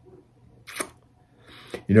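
A pause in a man's speech: one short, sharp mouth click, a lip smack, a little under a second in, then he starts speaking again at the very end.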